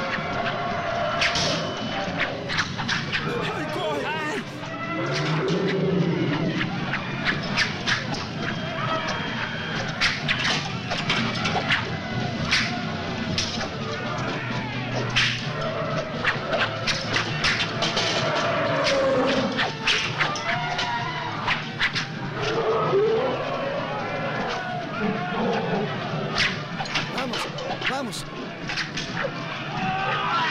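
Battle-scene soundtrack: men shouting and screaming over background music, with many sharp clashes and thuds throughout.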